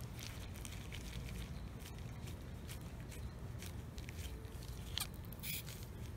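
Faint scraping and ticking of a pipe cutter's wheel being turned around the steel can of an 18650 lithium-ion cell, with a slight hiss near the end.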